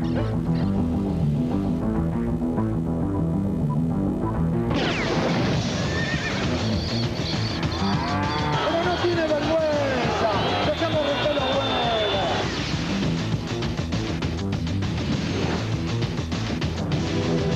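Music with a steady beat, with a horse whinnying over it about halfway through in a series of high, wavering, falling calls.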